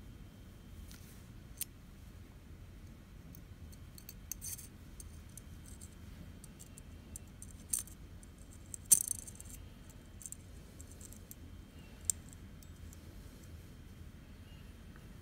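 Small, sharp metallic clicks and brief rattles, the loudest about nine seconds in, from the flint spring and press-and-twist flint cap in the base of a vintage Ronson Varaflame butane lighter being handled and pressed home.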